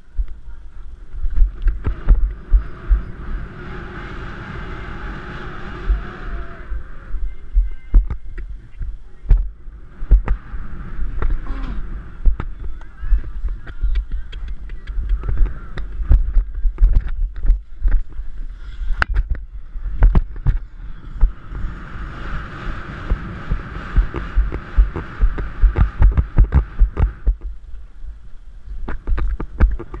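A pony galloping, heard through a camera worn by the rider: a fast, rhythmic low thudding of hoofbeats and the camera jolting, with sharp knocks and clicks throughout. Twice, for several seconds each, a rushing noise rises over it, about two seconds in and again near twenty-two seconds.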